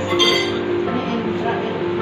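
A single short clink of tableware about a quarter second in, with a brief high ring, over steady background guitar music and voices.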